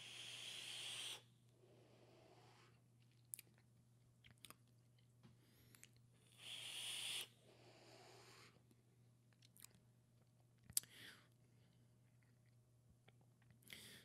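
A vape being hit: a soft hissing rush of air as a long draw is pulled through a rebuildable dripping atomizer, then about six seconds in a second rush as the large cloud of vapour is blown out, with a few faint clicks in between.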